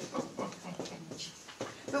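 Felt-tip marker scratching and squeaking in short strokes on a whiteboard, fairly faint.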